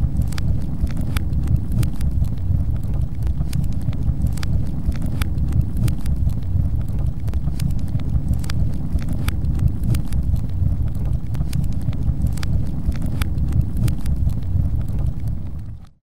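Outro sound effect: a loud, steady low rumble with irregular sharp crackles, fading out at the very end.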